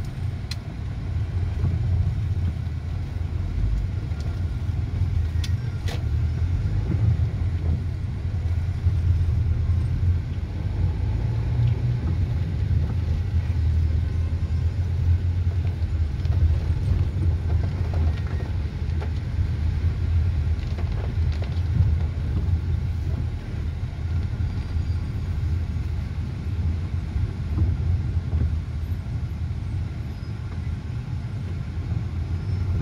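Steady low rumble inside a taxi's cabin: engine and tyres on a wet city road, with a few faint clicks about five to six seconds in.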